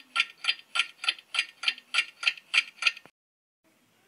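Clock ticking sound effect, an even train of ticks about three a second, marking thinking time after a question; it stops about three seconds in.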